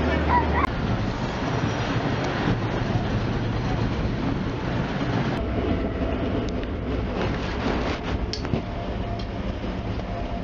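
Passenger train in motion heard from inside the carriage: a steady low rumble and running noise, with a few sharp clicks and knocks in the second half.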